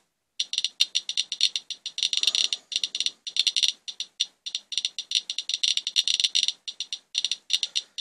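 A Radiation Alert Geiger counter with a pancake probe clicking fast and irregularly, with a few brief pauses, as it counts about 800 counts per minute from a rain swipe sample. That is roughly 24 times the owner's normal background of 34 cpm.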